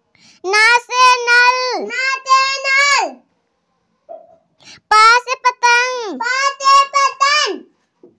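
A young child's high-pitched voice chanting Hindi alphabet lines in a sing-song tune, letter then picture word: two drawn-out phrases with a pause between them.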